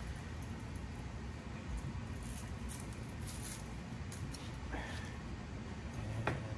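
Faint light clicks and a brief swish about five seconds in: a metal hose clamp being handled, over a steady low room hum.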